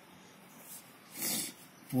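Faint room hiss, then a little over a second in a short, sharp breath drawn by the man reading aloud, and his voice starting again at the very end.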